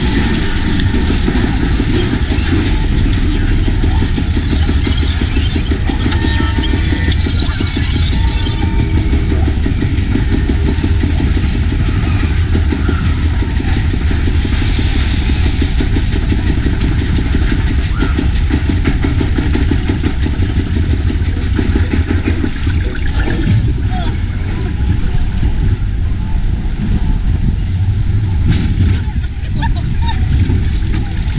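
Spinning roller coaster car being hauled up a chain lift hill: a steady, rapid clicking rattle from the lift chain and track, over a low mechanical rumble.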